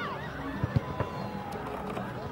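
Distant shouting voices of players and spectators, with three sharp thumps a little under a second in, the middle one loudest.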